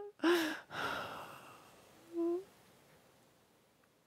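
A woman sighs: a breathy exhale that fades over about a second, then a short, low hummed "mm" about two seconds in.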